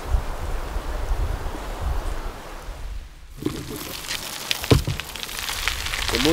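Wind buffeting the microphone in open air, a rushing noise over a low rumble. About three seconds in it breaks off into a quieter outdoor ambience with a few clicks and one sharp knock.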